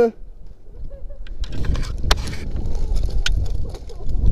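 Wind rushing over a body-worn action camera's microphone as a rope jumper swings on the rope, starting about a second and a half in, with a few sharp clicks from the rope gear. A shouted voice cuts off at the very start.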